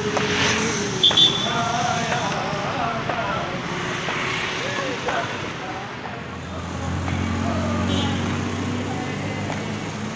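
City road traffic with men's voices over it. A vehicle horn beeps briefly about a second in, and an engine hums past near the end.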